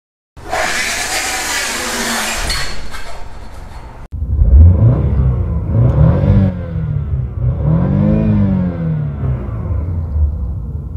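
A few seconds of loud rushing noise, then a car engine revved twice while parked, its pitch rising and falling each time.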